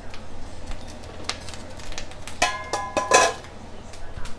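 Enamelled graniteware canner lid put onto the pot of the boiling water bath canner. A few light knocks come first, then two ringing metal clangs well under a second apart near the end as the lid settles on the rim; the second clang is the louder.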